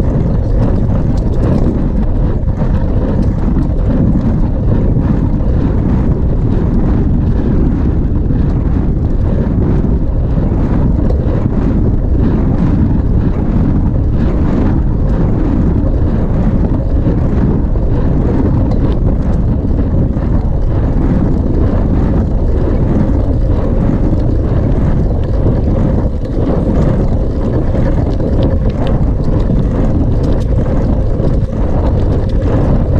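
Wind buffeting the microphone of a handlebar-mounted camera on a bicycle in motion: a loud, steady rumble with no letup.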